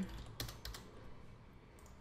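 A few quick keystrokes on a computer keyboard within the first second.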